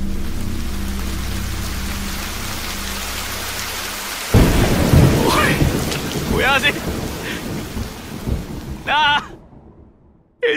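Heavy rain hissing steadily over a low droning tone, then a sudden loud thunderclap about four seconds in that rumbles on and fades under the rain.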